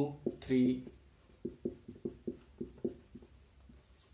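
Felt-tip marker writing digits and commas on a white board: a quick run of short squeaky strokes, about four a second.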